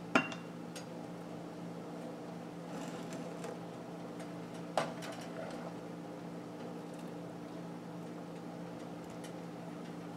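A black slotted serving spoon clacks against the pot and a ceramic plate as pieces of boiled burbot are scooped out and set down. There is a sharp clack at the very start and another about five seconds in, with softer scrapes and taps between, over a steady low hum.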